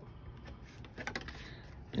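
Faint handling of cardstock, with a few small clicks about a second in as a plastic quilter's clip is fastened onto the paper edge.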